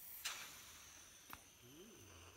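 Faint breath blowing through a thin straw into a plastic balloon-paste bubble, with one small click about two-thirds of the way through.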